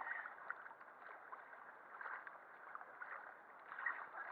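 Choppy water lapping and sloshing against a waterproof camera at the surface of an ocean pool, with small splashes near the start, about two seconds in, and near the end.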